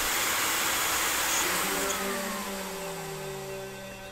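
Sci-fi teleportation sound effect: a rushing whoosh of noise that thins and fades, with a tone gliding slowly downward in its second half.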